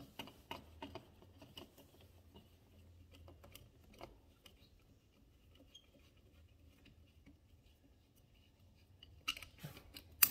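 Faint small clicks and light scraping as a screwdriver loosens the mounting screws of a plastic Honeywell thermostat base plate and hands handle the plate. A louder cluster of clicks comes near the end.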